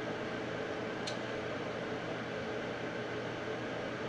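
Steady background hiss with a faint hum, the room tone of a small room, and a faint click about a second in.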